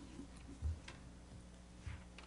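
Sheets of paper being leafed through at a lectern microphone: faint rustling and two soft low thumps about a second apart as the pages and hands knock against the lectern.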